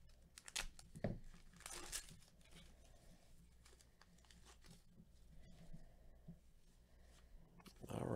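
Wrapper of a trading-card pack torn open by hand: a few sharp crackles and a brief tear in the first two seconds, then faint handling noise as the cards are drawn out.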